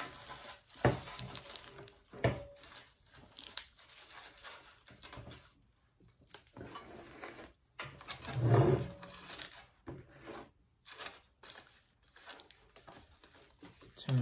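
Crinkle-cut paper shred rustling and crackling as it is pushed down by hand between items packed in a small metal container, with a few sharp knocks and a louder bump a little past halfway.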